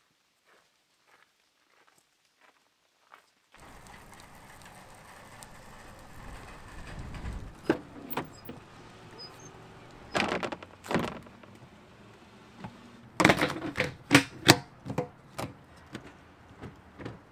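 Pickup truck doors and gear being handled: a series of thunks and knocks as the crew-cab rear door is worked and things are put into the cab, over steady outdoor background noise. There are heavier thuds about ten seconds in and a loud cluster of knocks near the end. Faint footsteps on gravel and leaves come before this.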